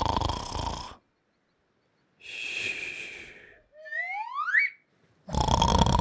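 Cartoon snoring sound effect: a loud, rasping snore, then a softer breathy exhale ending in a short rising whistle, then another loud snore near the end.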